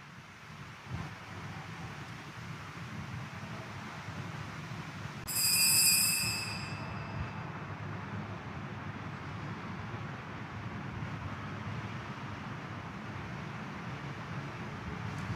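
Steady low background noise of a church during Communion, without speech. About five seconds in, a brief high-pitched ringing tone sounds and fades within about a second.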